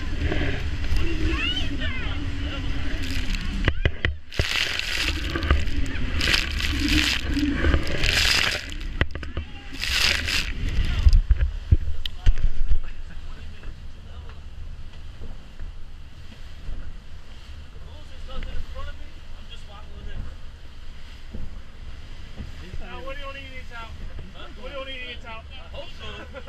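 Boat running hard through rough chop: wind and sloshing, splashing water over a steady low rumble, with loud bursts of spray in the first half, then much quieter from about halfway.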